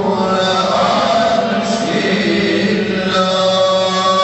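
A man chanting a mevlud hymn in long held notes with pitch ornaments.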